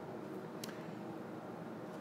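Room tone in a lecture hall: a faint steady hiss and hum, with one faint click about half a second in.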